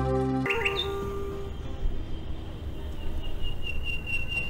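Background music cuts off about half a second in. It gives way to outdoor ambience: a low rumbling background noise with birds chirping and a thin, high, steady whistle.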